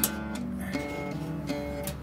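Background music: acoustic guitar, plucked and strummed notes that ring and change every half second or so.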